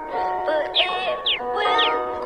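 Children's nursery-rhyme song: a voice sings the line "But it will grow to be tall" over backing music, with three short falling high notes in the second half.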